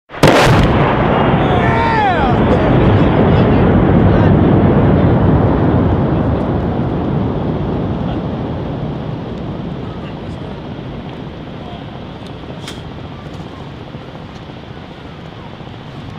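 A 120 mm mortar round exploding on a distant ridge: one sharp blast, then a long rolling rumble that fades slowly over more than ten seconds.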